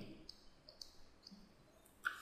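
Near silence, broken by a few faint, short clicks in the first second or so.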